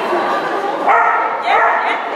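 A dog barking twice, about half a second apart, over background voices in a large hall.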